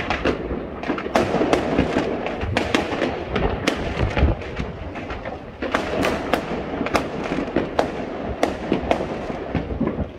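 Many fireworks and firecrackers going off at once: a continuous din of overlapping bangs and crackling, with sharp cracks several times a second.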